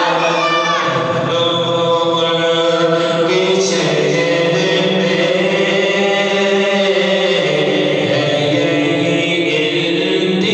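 A man's solo voice chanting a naat (Urdu devotional poem) into a microphone, holding long, steady melodic notes and moving between them in slow steps.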